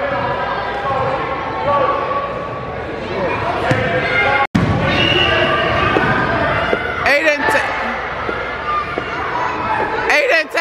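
Echoing gym noise during a children's basketball game: many overlapping voices of spectators and players calling out, with a basketball bouncing on the hardwood court. The sound cuts out for an instant about halfway, and louder shouts come about seven seconds in.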